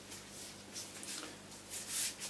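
Hands rubbing and sliding along a hickory tool handle as it is turned and handled: a run of faint, soft rubbing strokes.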